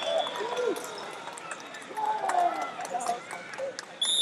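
Several voices of spectators and coaches calling out across a large gym hall, overlapping and not clearly worded, with scattered short clicks and squeaks from the mat.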